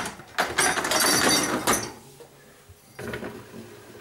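Dishwasher's lower wire basket pushed in along its rails on its rollers: a knock, then a rattling roll lasting about a second and a half, fading to a few light knocks.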